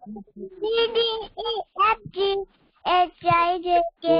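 A young child singing in short, pitched syllables, with a brief pause about two and a half seconds in.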